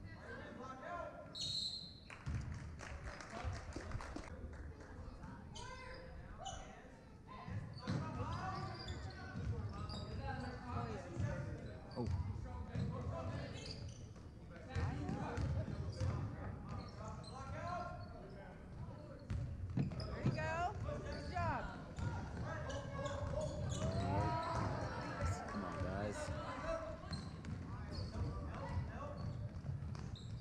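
Basketball bouncing on a hardwood gym floor during play, with the voices of spectators talking and calling out around it.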